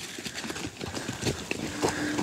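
A man's footsteps on a forest trail, irregular crunches and knocks on dry leaf litter and stones. A low steady tone comes in near the end.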